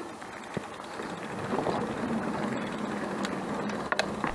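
Mountain bike rolling along a wooded trail and boardwalk: steady tyre-and-trail noise with a few sharp knocks, and a steady low hum that joins about one and a half seconds in.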